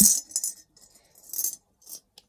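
Coins rattling inside a piggy bank as it is shaken in short bursts to get the money out.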